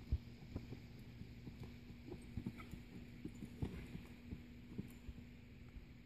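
Hoofbeats of a ridden paint horse on soft arena dirt: an irregular run of dull thumps, with a steady low hum under most of it.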